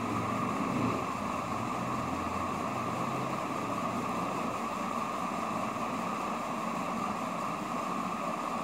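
Steady background hiss, like a running fan or air conditioner, with a faint low hum that fades out a few seconds in.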